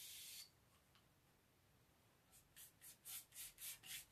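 Faint spray-bottle misting of paint wash that stops about half a second in; then, after a short pause, a paintbrush swishing in quick light strokes over a painted wooden cabinet door, about five strokes a second.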